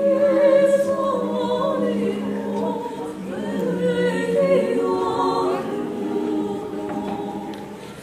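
Small mixed choir of men's and women's voices singing a cappella in held chords, with a short break between phrases about three seconds in.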